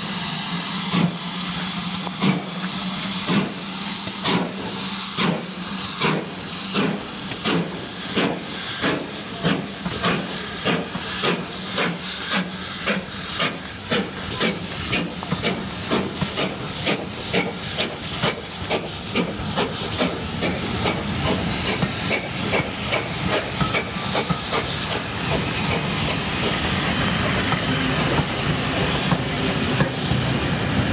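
GWR Modified Hall 4-6-0 steam locomotive No. 6989 'Wightwick Hall' pulling away with its train. Its exhaust beats quicken steadily from about one and a half a second to three or four a second, and steam hisses from the cylinders at first. Near the end the beats fade under the rolling clatter of the coaches passing close by.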